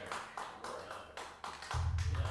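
A few people clapping unevenly, a small applause at the end of a song. A deep low tone cuts in near the end.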